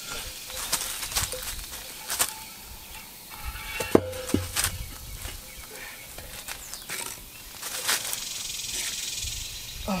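Large glazed pot being rocked and walked across a concrete pad onto wooden blocks: scattered scrapes and knocks, the loudest a sharp knock about four seconds in that rings briefly. A steady high hiss runs underneath.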